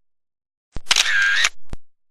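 A camera shutter sound: after silence, a sharp click about three-quarters of a second in, a short ringing burst, and a second click just before the end.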